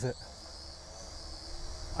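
Mengtuo M9955 X-Drone quadcopter hovering overhead, its propellers giving a faint, steady high-pitched whine.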